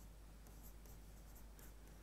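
Very faint tapping and scratching of a stylus writing on an interactive display screen, a few light strokes over a steady low hum, close to silence.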